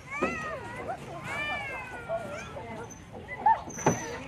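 Children's high-pitched voices calling and squealing, the pitch sliding up and down, with a sharp knock near the end.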